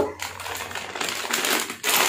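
Clear plastic zip-lock food packet crinkling and rustling as it is handled and turned in the hands, with a louder rustle near the end.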